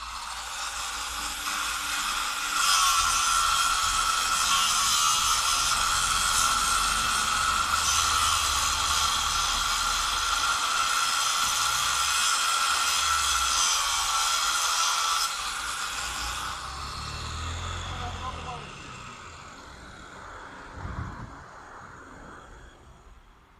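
Power tool, most likely an angle grinder, cutting through a steel light pole: a loud, steady high whine with a grinding hiss that holds for about twelve seconds, then fades away. A short knock near the end.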